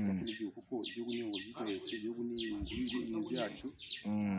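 A small bird chirping over and over, short high notes about three a second, behind a man's talking voice.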